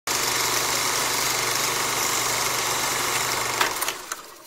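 Film-projector-style sound effect: steady mechanical running with hiss and a low hum. A few clicks come near the end as it fades.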